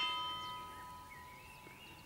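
A ringing, bell-like tone with several pitches that starts suddenly and fades away over about two seconds.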